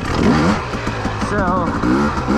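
2020 Husqvarna TE300i's fuel-injected two-stroke single running steadily at low revs while the bike rolls slowly, under a man's voice.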